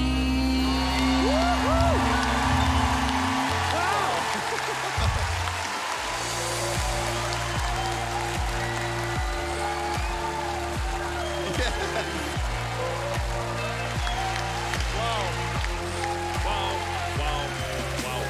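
Studio audience applauding and cheering with whoops, over background music. A held note dies away in the first few seconds, and the music then settles into a steady beat.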